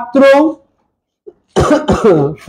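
A man's voice speaking in short bursts, broken by a pause of about a second in the middle.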